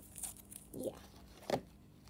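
Puffy, sticky slime being stretched and squeezed by hand, with faint sticky crackling and one sharp click about one and a half seconds in.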